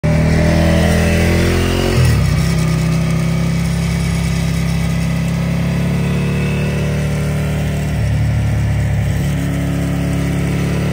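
Ducati 1098R L-twin through a Termignoni racing full exhaust, loud. The revs rise over the first two seconds, fall suddenly about two seconds in, then hold steady as the bike cruises.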